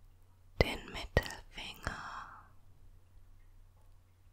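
A woman whispering briefly for about two seconds, starting just over half a second in, with three sharp mouth clicks among the whispered sounds.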